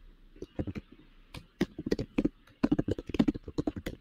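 Typing on a computer keyboard: an irregular run of keystrokes with a couple of short pauses.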